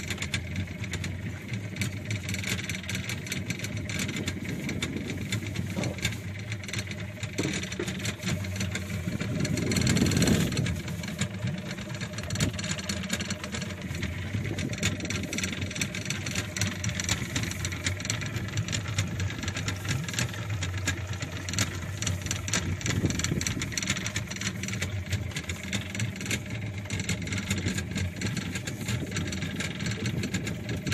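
A fishing boat's engine running steadily with a low, even hum, and a brief louder swell of noise about ten seconds in.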